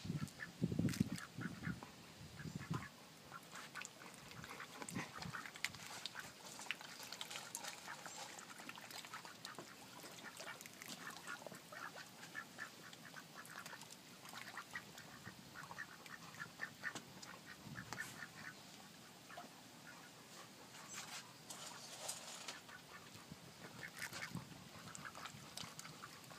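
A small flock of white domestic ducks quacking softly, short quiet calls scattered all through, with a few louder low thumps in the first couple of seconds.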